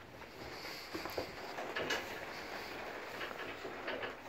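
Quiet background noise with a few light taps and knocks, the first about a second in, another near two seconds in and one near the end.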